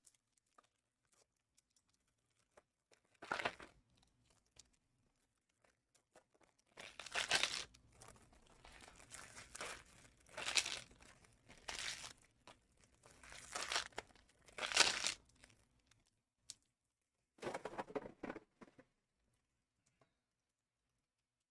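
Plastic wrapping on trading-card packs being torn open and crinkled by hand, in a series of short rustling bursts with quiet gaps between them.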